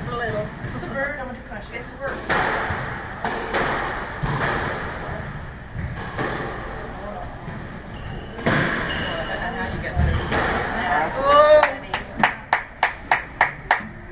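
Squash rally: a rubber squash ball struck by rackets and smacking off the court walls, sharp hits roughly a second apart with a squeak near the end. It is followed by a quick run of evenly spaced sharp taps.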